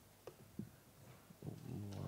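A few sparse clicks of laptop keys being typed, then about a second and a half in a low steady hum starts and carries on.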